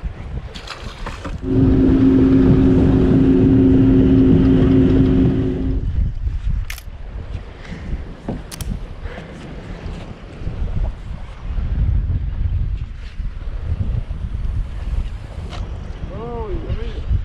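A motor on the boat hums steadily with two held tones for about four seconds, starting a second and a half in and stopping abruptly. Then wind on the microphone and water noise, with a few sharp clicks.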